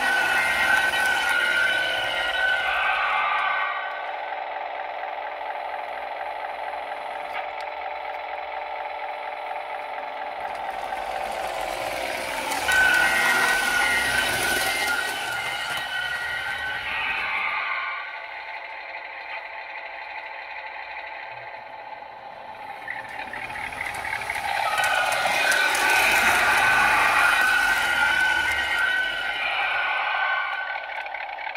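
Lionel Custom Series 2398 model diesel locomotive running on the layout, its onboard sound system playing a hot-rod car engine sound. The sound swells three times: at the start, about twelve seconds in, and again about twenty-five seconds in, fading between.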